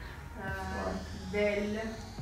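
Speech: a voice sounding out Arabic letters, two drawn-out syllables about a second apart, over a low steady hum.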